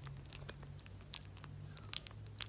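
Yorkshire terrier puppies licking and lapping soft liquid pâté off a plate: scattered small clicks and smacks, a louder one just past the middle and another near the end, over a low steady hum.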